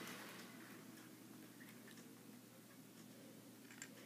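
Near silence: the faint running noise of a Bachmann Gordon model locomotive fades out in the first half second as it slows to a stop, leaving only a couple of faint ticks.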